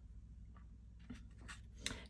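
Faint handling of a cardstock greeting card: a few light paper scrapes and taps as fingers shift their grip, over a low steady room hum.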